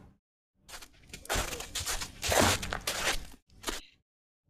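Experimental electronic music built from noisy, crackling textures (a sample of objects and bags being rubbed), heard through a video call and chopped into irregular bursts with short dead-silent gaps.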